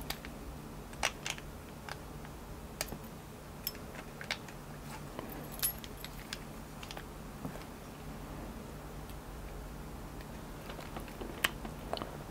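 Scattered small metallic clicks and taps, irregular and often a second or more apart, from a precision screwdriver bit being worked into a Federal padlock's body while the keys hanging in the lock clink. It is the sound of trying to seat the bit on the screw while taking the padlock apart.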